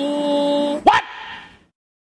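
A woman singing one long held note, steady in pitch. Just under a second in it breaks off in a brief sharp sound, then fades to silence.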